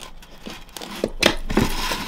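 Thin clear plastic deli cup handled against a glass enclosure and its lid pressed shut: crinkling plastic and a few clicks, getting louder about a second in.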